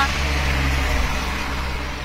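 A car driving past along the street close by, engine and tyre noise loudest at the start and fading away.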